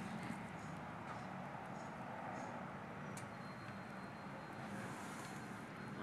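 Steady outdoor background noise with a few faint clicks, one sharper click about three seconds in.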